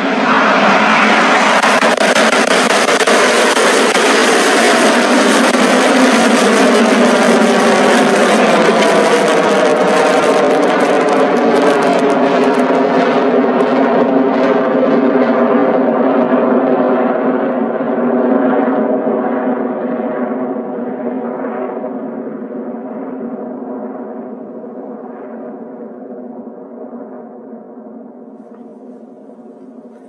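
Electron rocket's nine first-stage Rutherford engines firing at liftoff: a loud, steady rocket roar that holds for about the first two thirds, then fades and grows duller as the rocket climbs away.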